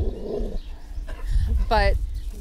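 A dog growling low for about half a second, followed by a low rumble.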